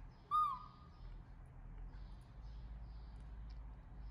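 A baby macaque gives one short, clear coo about a third of a second in, holding its pitch briefly and then dropping at the end.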